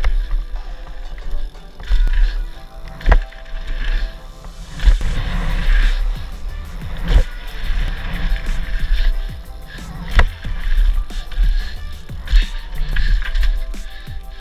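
Mountain bike riding a dirt trail: tyre and frame rumble with wind buffeting the microphone, broken by three sharp knocks as the bike hits bumps and jumps. Background music plays underneath.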